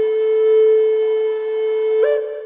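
Flute music: one long held note, clear and steady, with a step up to a higher note at the very end.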